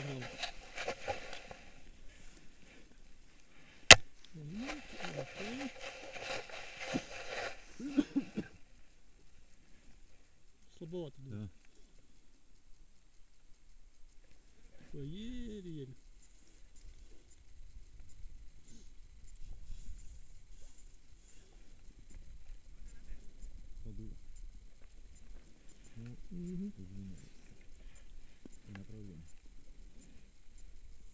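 Brief, scattered voice fragments over low background noise, with a single sharp click about four seconds in, the loudest sound.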